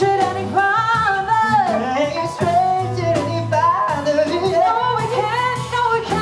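Live band performance: a female vocalist sings a gliding melody over piano, bass and drum kit, with cymbal and drum strokes keeping the beat.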